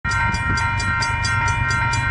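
Approaching BNSF freight train's locomotive horn sounding a steady held chord over a low rumble, with a fast, even ticking about four to five times a second.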